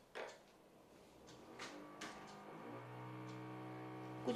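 Power drill from construction work in a nearby flat: a steady, low motor drone that swells in around the middle and holds. A few sharp clicks of tarot cards being handled come earlier.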